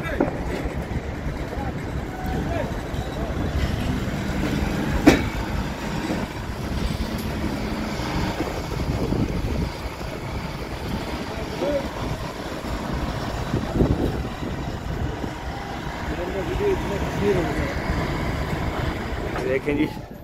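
Kato 50-ton mobile crane's diesel engine running steadily while it hoists a load, with faint voices in the background. There is a single sharp knock about five seconds in.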